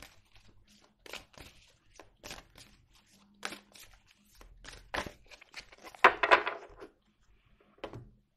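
A deck of oracle cards shuffled by hand: a run of short card slaps and slides, with a denser, louder flurry of card noise about six seconds in, and the cards set down on the table near the end.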